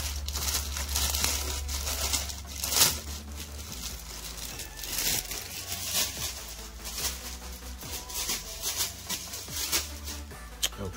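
Clear plastic poly bag around power cords crinkling and crackling as it is handled, in irregular bursts with one louder crackle about three seconds in. A low steady hum runs underneath for the first few seconds.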